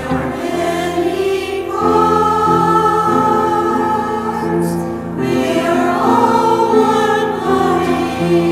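Music: a choir singing a hymn, the voices holding long, steady notes.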